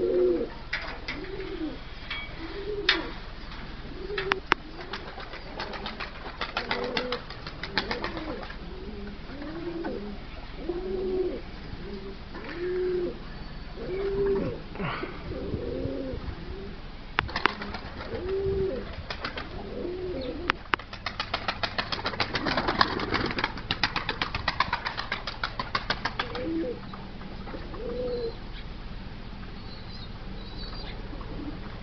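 Domestic tumbler pigeons cooing over and over, a short arched coo about every second. Twice, once early on and again for several seconds in the second half, quick rapid flurries of wing flapping come in over the cooing.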